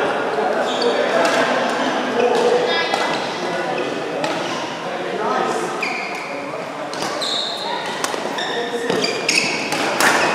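Badminton rackets hitting a shuttlecock with sharp clicks, and court shoes squeaking briefly on the floor, in a reverberant hall with indistinct voices.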